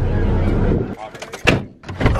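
A steady low rumble, then a few light clicks and a car door shutting with a single thump about a second and a half in.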